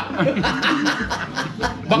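Men chuckling in short, repeated bursts mixed with talk.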